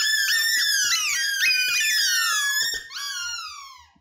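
Squeaky rubber juggling balls squeaking over and over as they are thrown and caught, a dense run of overlapping high squeaks that each fall in pitch, with faint knocks of the catches underneath. The squeaks thin out and stop shortly before the end, as the juggling stops.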